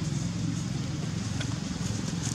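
An engine running steadily with a low, evenly pulsing rumble.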